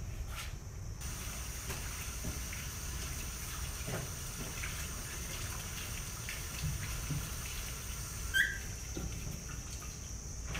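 Water hissing steadily, with a few faint clicks and a short high squeak about eight seconds in.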